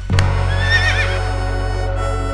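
A horse whinnying once, a short wavering call about half a second in, laid over steady background music. A sharp hit comes just before it.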